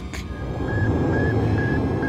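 Sputnik 1's radio signal: a thin, high beep repeated evenly a few times a second, over a low steady rumble.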